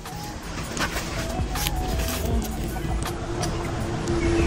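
Steady outdoor background noise with a low rumble, and a few faint clicks and rustles.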